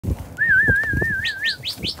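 A bird singing: a wavering, whistle-like note, then a quick series of rising chirps, about four a second. A few low thumps come underneath.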